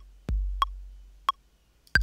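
Ableton Live's metronome clicks on each beat at 90 beats per minute over a looping 808 kick drum pattern. An 808 kick with a long, low, fading boom hits about a third of a second in, between evenly spaced metronome clicks. Near the end, a higher-pitched downbeat click and the next kick sound together.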